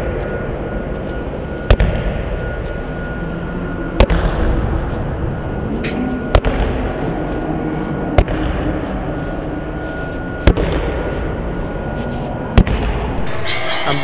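A basketball being bounced slowly on a gym floor: a sharp bounce about every two seconds, over a steady background hiss.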